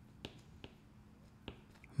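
Stylus tapping and writing on a tablet screen: a few faint, sharp ticks at uneven intervals.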